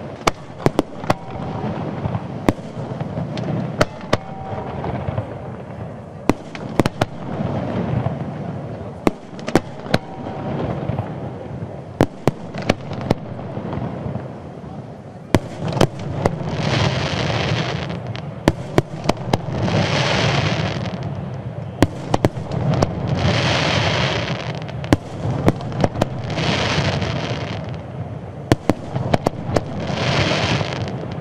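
Aerial firework shells bursting in a continuous display, with sharp bangs coming close together. From about halfway on, each bang is followed by a hissing crackle lasting a second or two, about every three seconds.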